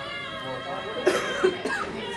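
Background music with steady held tones, and about a second in a person close by coughs twice, loudly.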